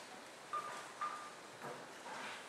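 Two short, soft high notes about half a second apart from the stage keyboards, over the faint room tone of a concert hall.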